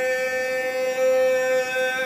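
Gondolier singing an Italian song in a male voice, holding one long, steady high note.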